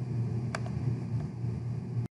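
Steady low hum of room and microphone noise, with a sharp mouse click about half a second in and a fainter click a little after a second.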